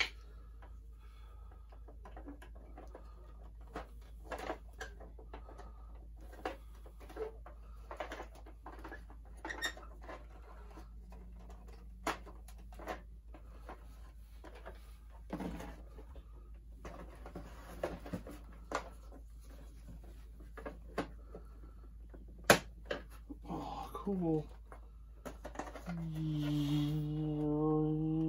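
Hard plastic clicks and knocks as a vintage Kenner Slave-1 toy ship is handled and turned over, with scattered sharp snaps, the loudest about 22 seconds in, and a stretch of soft rustling. Near the end a man's voice holds a drawn-out hum.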